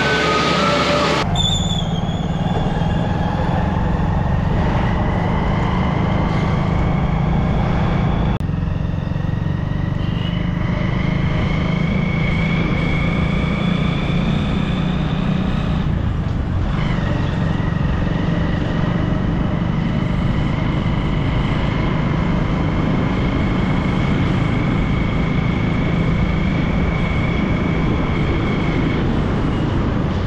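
Moving motor vehicle's engine and road noise, steady, with a whine that climbs slowly in pitch. The sound changes abruptly about a second in, about eight seconds in and about sixteen seconds in.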